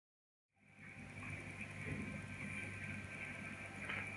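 Digital silence, then about half a second in a faint, steady hum and hiss comes in: the room tone of a running reef aquarium's equipment.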